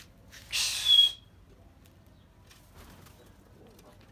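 A short burst of pigeon wing-flapping, about half a second in and lasting under a second, ending in a brief high squeak.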